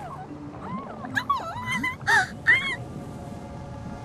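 A cartoon squirrel's high, squeaky vocal noises over background music: a handful of short rising-and-falling squeaks from about one to three seconds in. Near the end the music settles into a held chord.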